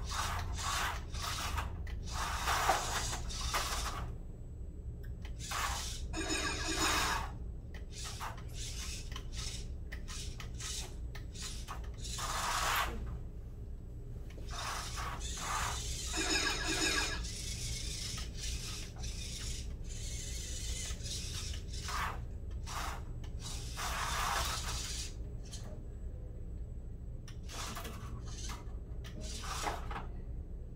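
A VEX IQ robot being driven in short bursts, its motors whirring and plastic parts scraping and rubbing on the field tiles and risers, with a brief whine twice, about six and sixteen seconds in.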